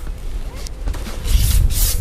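Telescopic handle of a long-handled boat landing net being loosened at its clasp and slid out, the pole sections rubbing against each other, with a scraping slide in the second half over a low rumble.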